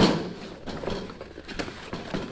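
Cardboard box handled and set down on a metal tool cart, with a sharp noise at the start, then rustling and scraping of cardboard as the box's tuck-in lid tabs are worked open.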